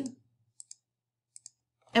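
Faint computer mouse clicks: two quick pairs of clicks, about three-quarters of a second apart, as keys are pressed on an on-screen calculator.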